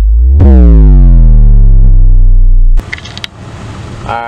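Loud electronic synth bass hit used as an edit transition, its tone sliding downward in pitch over a deep steady bass, cutting off suddenly about three seconds in. A low steady rumble of outdoor background noise follows.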